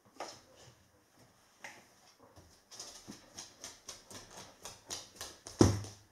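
Goldendoodle's claws clicking on a hardwood floor as she walks, a few clicks a second, followed by a single loud thump near the end.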